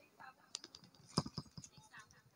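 Quiet room with faint murmured voices and a few scattered sharp clicks and taps, the loudest a little past halfway.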